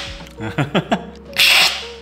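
Brewed coffee slurped hard off a tasting spoon, a loud hissing intake of air, twice: one slurp ending right at the start and another about a second and a half in.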